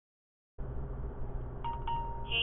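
Silence, then from about half a second in the low, steady rumble of the truck's engine and tyres heard inside the cab. About a second and a half in, the speed-warning phone app sounds its over-speed alert chime: a short tick followed by a held tone, signalling that the truck is over the speed limit.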